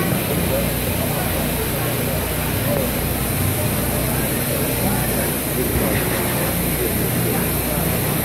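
A steady low rumble with a faint, even hiss above it, unchanging throughout, with faint distant voices now and then.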